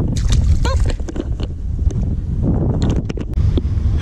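Wind buffeting the microphone, a steady low rumble, with a few short clicks and knocks scattered through it, several close together about three seconds in.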